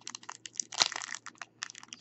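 Clear packaging tape being picked at and peeled off a plastic trading-card holder by hand: an irregular run of short crackles and crinkles, sharpest a little under a second in.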